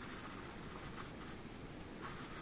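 Faint sound of a fine paintbrush stroking acrylic paint onto canvas, over a low steady room hiss.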